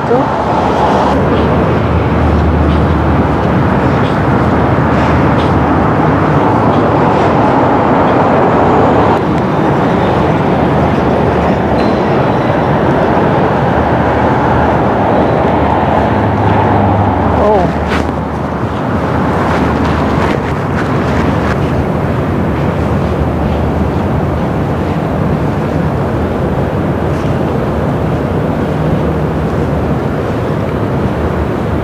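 City street noise: a loud, steady rush of traffic that eases a little about eighteen seconds in.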